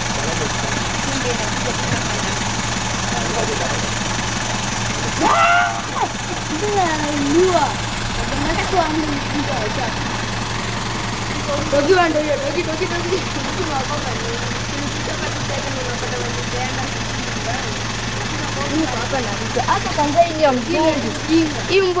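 People's voices talking in the background over a steady low hum, with a higher-pitched call about five seconds in.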